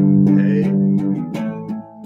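Electric guitar playing a song's chord progression: a strummed A chord rings out, then new strums come in about a second and a half in.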